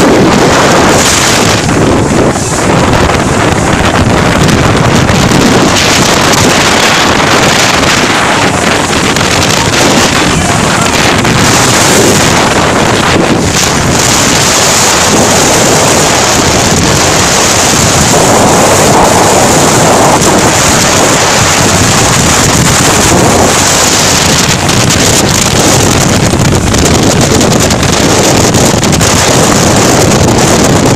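Cyclone-strength wind and driving rain blasting the microphone: a loud, unbroken rushing noise that never lets up.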